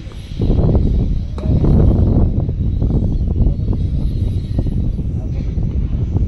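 Indistinct voices over a steady low rumble of outdoor noise, with a single sharp click about one and a half seconds in.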